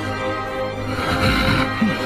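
Soundtrack music, with a brief shrill, noisy cry or screech over it about a second in.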